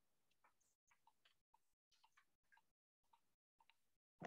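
Near silence with a run of very faint clicks, about three a second, from a pygmy current meter's headset: each click marks one rotation of the meter's spinning cups. The sound cuts out for moments in between, as a call's noise suppression does.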